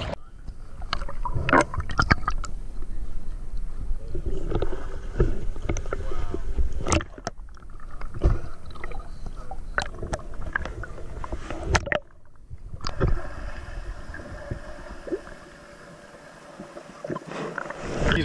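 Sea water sloshing and splashing around an action camera moving between the surface and underwater, with irregular sharp knocks and bubbling. The sound changes abruptly about two-thirds of the way through and then turns quieter.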